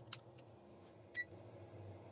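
Faint clicks and one short high beep about a second in from a digital multimeter being handled and set up to read current, over a faint low steady hum.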